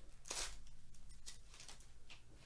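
A foil trading-card pack wrapper crinkling as it is handled and the cards are slid out: a few short rustles, the loudest about half a second in.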